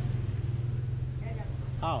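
Steady low hum of a vehicle engine idling close by, with faint voices over it and a man's brief "oh" near the end.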